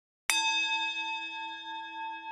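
A single struck bell chime: a sharp strike about a quarter of a second in, then a long ringing tone with several overtones that fades slowly and wavers in loudness. It serves as a transition chime into an advertisement break.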